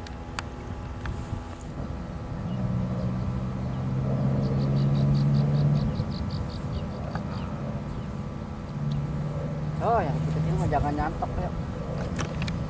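Low, steady hum of a motor, swelling in for about three seconds, dropping away, then returning briefly about nine seconds in. A quick run of faint high ticks sounds over it in the middle.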